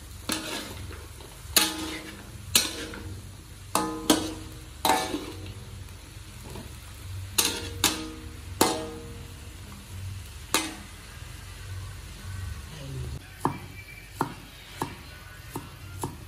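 Metal spatula clanging and scraping against a steel wok while stir-frying long beans and pork, about ten sharp strokes, each with a short metallic ring, over the first eleven seconds. Near the end, a cleaver chopping spring onions on a wooden board in quick, light knocks.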